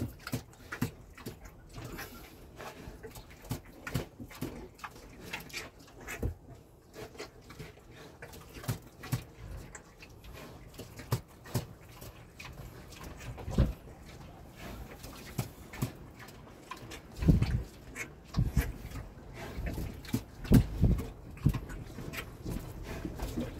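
A sow grunting and snuffling, with scattered short clicks and knocks. The loudest low grunts come in a cluster near the end.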